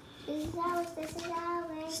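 A child singing one long, steady note, quietly.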